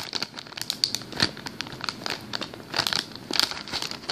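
Clear plastic packaging crinkling in quick, irregular crackles as fingers squeeze a foam toast squishy through the bag.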